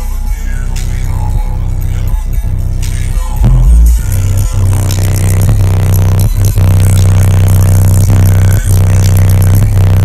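Bass-heavy electronic music played at very high volume through a car audio system's American Bass 10-inch subwoofers, heard inside the cabin. The deep bass gets louder about three and a half seconds in, and the meter reads around 141 dB at 32 Hz.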